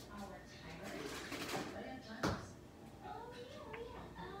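Faint voices in a small room, with one sharp knock a little over two seconds in.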